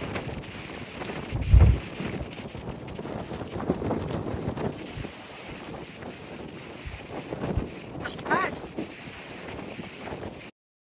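Strong gusty wind buffeting the microphone, a rough, uneven rumble with a loud surge about a second and a half in.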